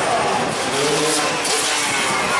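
Freestyle motocross dirt bike engine revving, its pitch rising and falling, over a loud steady background noise.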